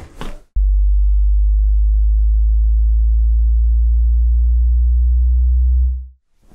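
A loud, steady, deep hum, a single low electronic tone that switches on abruptly about half a second in and cuts off at the very end.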